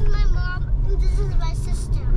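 Steady low road rumble inside a car's cabin while it is driven.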